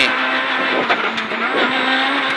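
Renault Clio Super 1600 rally car's four-cylinder engine running hard at high revs, heard from inside the cabin. Its pitch holds nearly steady, with slight wobbles about a second in.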